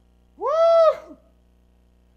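A preacher's single high-pitched "woo!" shout, about half a second long, that rises, holds, then falls in pitch: a shout of praise.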